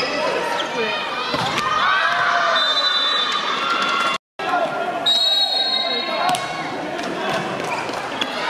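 Sound of an indoor women's volleyball match in a large hall: many voices of players and spectators calling and shouting, with sharp ball hits and thuds. The sound cuts out completely for a moment about four seconds in.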